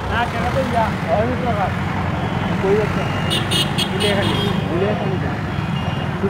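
Street traffic: a steady low engine hum from idling and passing vehicles, with people's voices talking over it. A bit over three seconds in, a quick run of sharp high rings for about a second.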